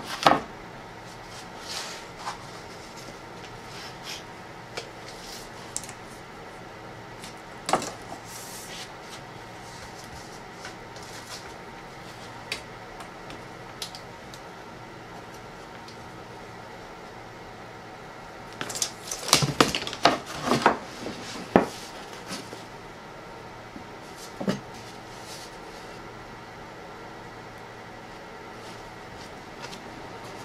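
Wooden panels and a tape measure being handled on a workbench: scattered knocks and light clatters, with a run of several clatters about two-thirds of the way through, over a steady low hum.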